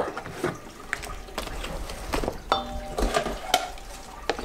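A plastic measuring cup knocking and scraping against a stainless steel mixing bowl as a cup of flour is scooped and tipped in: a scatter of light knocks and clinks, with one brief ring a little past halfway.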